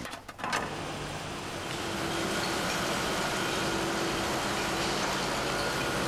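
Waste-plant machinery running steadily: an even mechanical noise with a faint hum. It starts about half a second in.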